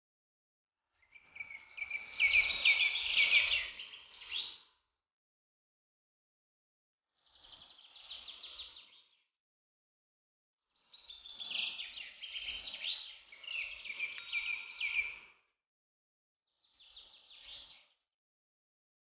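Birds singing in four bouts of rapid, high chirping notes, with silence between the bouts.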